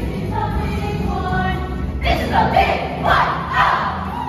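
A young cast's group voices sing over a musical backing track, and about two seconds in the group breaks into loud shouts in about three bursts.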